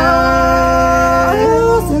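A voice singing a Tai folk love-duet song (giao duyên), holding one long steady note, then sliding up to a higher note about one and a half seconds in, over a steady low backing.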